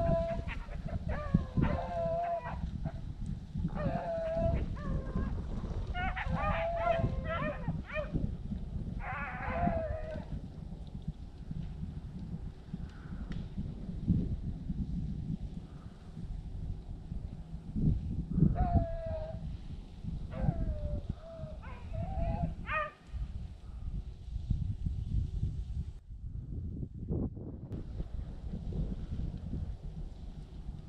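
A pack of beagles baying while running a cottontail rabbit, in bursts of drawn-out cries through the first ten seconds and again from about eighteen to twenty-three seconds in. A low rumble runs underneath.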